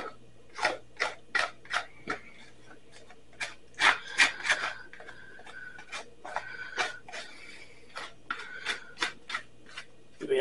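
A utensil scraping the inside of a clear plastic bowl of food, a run of short, irregular scraping strokes, some with a thin squeak.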